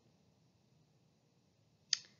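Near silence (room tone), broken near the end by one short, sharp click.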